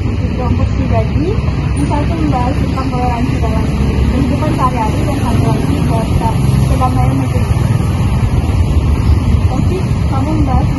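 Steady low rumble of outdoor background noise, with faint voices talking in the background.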